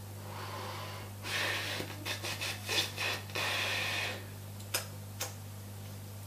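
Soft rubbing sounds from hands fidgeting close to the microphone, in several noisy stretches, over a steady low electrical hum, with two faint clicks near the end.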